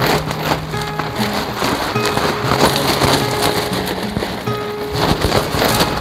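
Background music with held notes, over the rustling and flapping of nylon tent fabric as a mesh-inner dome tent is lifted and shaken out to clear it of sand and dirt.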